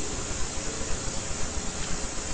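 Steady hiss of the recording's background noise, with a low rumble underneath and nothing else standing out.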